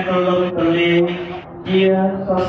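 A Buddhist monk chanting through a microphone and loudspeaker, a single male voice holding long, level notes, with a brief break for breath near the middle.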